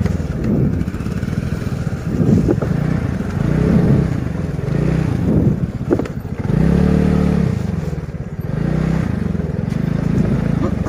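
Motorcycle engine revving up and down repeatedly as the rider rides the throttle over a rough, muddy dirt track, with one sharp click about six seconds in.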